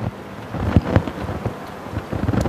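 Low rumbling room noise with a couple of short thumps about a second in.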